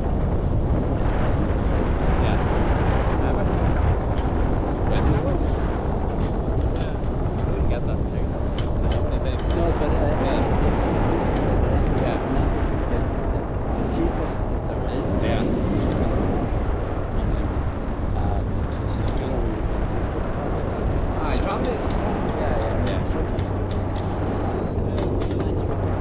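Wind buffeting an action camera's microphone in flight under a parasail: a steady, loud low rush, with scattered light clicks.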